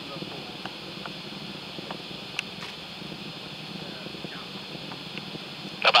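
Faint steady background of a low rumble under a high hiss, with a few faint ticks. Commentary over a loudspeaker starts right at the end.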